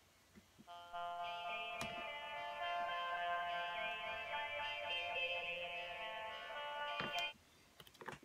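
Eurorack synthesizer voice, a Plaits oscillator through a filter played from an OP-Z sequencer, sounding a bright, steady, many-partial synth tone with its filter opened up. It starts just under a second in and cuts off about a second before the end.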